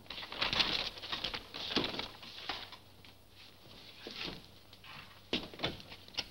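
Scuffling, chirp-like noise in the first two seconds, then a few quick knocks on a door about five seconds in.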